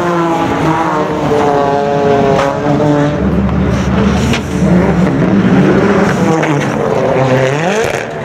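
Rally car engines revving hard at close range. The pitch climbs, breaks off and drops with throttle and gear changes, and rises sharply again near the end.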